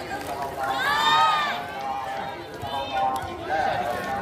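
Voices shouting during a volleyball rally: one long, high-pitched call rising and falling about a second in, and a shorter call near three seconds, over background chatter.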